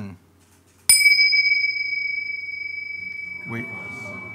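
A pair of tingsha cymbals struck together once about a second in: a bright clash, then a single clear high ring at one steady pitch that fades slowly and is still sounding at the end.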